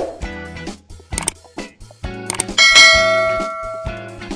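Background guitar music with a subscribe-button sound effect over it: a couple of quick clicks, then a loud bell ding about two and a half seconds in that rings out and fades over more than a second.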